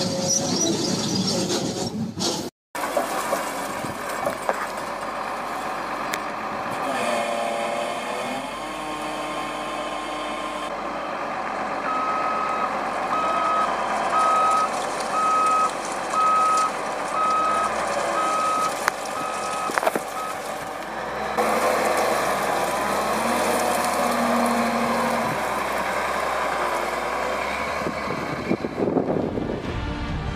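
Heavy machinery running, with a reversing alarm beeping about once a second for several seconds in the middle, from a Cat wheel loader handling a wrapped round cotton bale.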